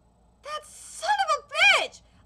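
A woman's excited vocal reaction: a sharp breathy gasp about half a second in, then high-pitched exclamations whose pitch rises and falls.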